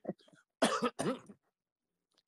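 A person coughing twice in quick succession: two short, rough coughs about half a second apart.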